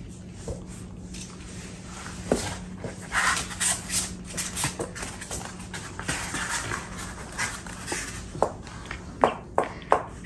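A puppy stirring and getting up in a playpen lined with cardboard. Scattered short scratches and taps of paws and nails begin about two seconds in, with a few sharper clicks near the end.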